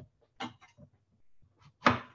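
Chef's knife cutting through a sweet potato and striking the wooden cutting board: a light knock about half a second in and a louder, sharper knock near the end.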